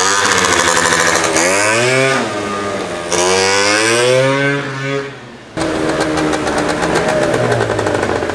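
Derbi GP1 scooter engine revving as it pulls away, its pitch rising and falling with the throttle, dropping quieter about five seconds in, then running steadily as it rides back. The owner says it runs badly at high revs and has an exhaust leak from a cracked weld.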